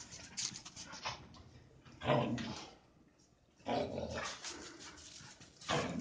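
Two dogs play-fighting, making dog noises in short bursts about two seconds in, again near four seconds, and once more near the end.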